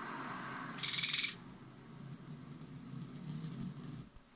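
Television programme sound heard through the set's speaker in a room: a low steady hum with a short, loud, bright burst about a second in.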